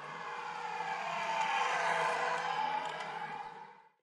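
A steady distant mechanical drone over outdoor background noise. It fades in, is loudest midway, and fades out near the end.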